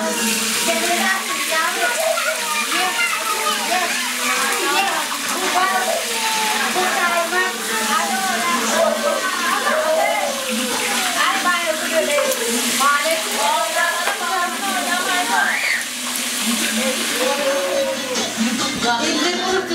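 A group of women and children talking and calling out over one another, many voices at once with no single speaker clear, over a steady hiss of crowd noise.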